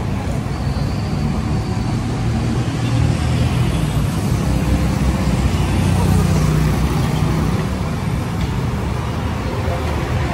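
City street traffic: a steady low rumble of car and motorcycle engines passing on the road, swelling a little about six seconds in.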